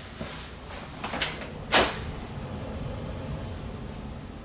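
A few knocks and clicks: a light one just after the start, a pair about a second in, and the loudest, sharpest knock just under two seconds in.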